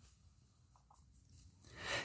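Near silence, then a man's soft intake of breath near the end, just before he speaks again.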